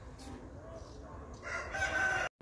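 A loud, pitched animal call with a clear tone begins about one and a half seconds in, over a faint outdoor background.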